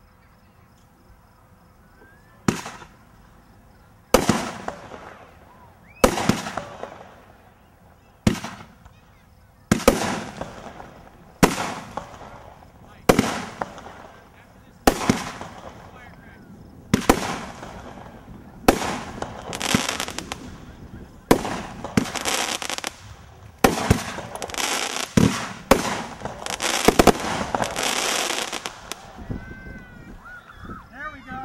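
Winda 'Strong Man' multi-shot consumer firework cake firing after a couple of seconds of quiet: about twenty sharp bangs, one every one and a half to two seconds, each with a fading tail. In the second half the shots come closer together and the tails thicken into a dense, continuous crackle until the volley stops near the end.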